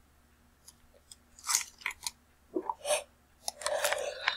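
A few short, scattered crunching noises close to the microphone.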